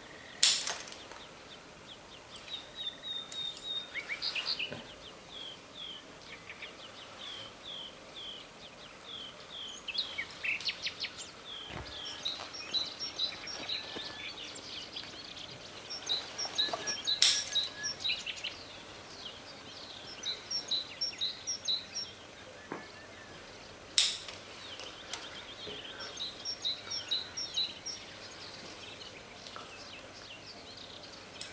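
Three sharp snips of bonsai scissors cutting the new central shoots of a Japanese black pine, about half a second in, at about seventeen seconds and at about twenty-four seconds. Between them, small birds chirp in quick runs of short repeated calls.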